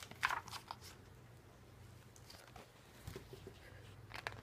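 Picture book being handled: a few brief rustles and clicks shortly after the start, then faint taps around three seconds in, over a low steady hum.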